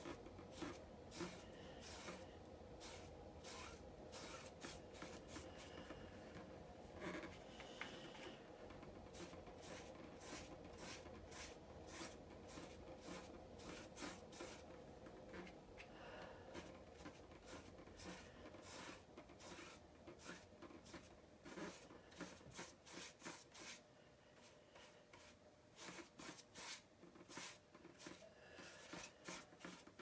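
Faint scratchy strokes and light taps of a paintbrush painting a flower pot, repeated irregularly over a faint steady hum.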